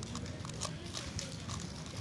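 Rapid, irregular clicking of a Galaxy V2 M speed megaminx as its faces are turned quickly during a timed solve, over a low steady hum.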